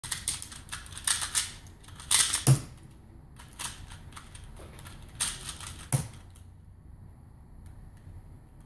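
QiYi Wuxia 2x2 speed cube being turned fast by hand: rapid plastic clicking in two flurries, each ending in a heavier knock, with the first at about two and a half seconds and the second at about six seconds. After that it goes quiet.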